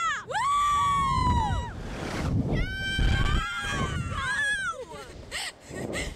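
Two young riders screaming and laughing on a reverse-bungee slingshot ride in a run of long, high-pitched screams that rise and fall, with wind rumbling on the microphone.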